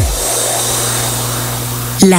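A steady hiss-like noise with a faint low hum underneath, holding level between the end of one music track and the start of a spoken jingle; it starts and stops abruptly.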